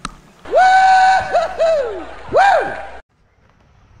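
A high-pitched, sing-song voice: one note rising and held, then a few short downward swoops and a final rise-and-fall, cut off abruptly about three seconds in.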